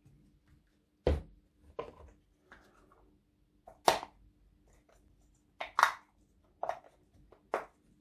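A scatter of short knocks and taps as small rubber tyres and metal wheel rims for a 1/14 scale RC truck are handled and set down on a workbench cutting mat, about eight in all, the loudest near the middle.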